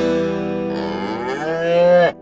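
A cow mooing: one long call that rises in pitch and grows louder, starting about a third of the way in and cutting off sharply at the end, over acoustic guitar music.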